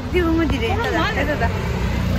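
A person talking over a steady low rumble; the voice stops a little past the middle and the rumble carries on.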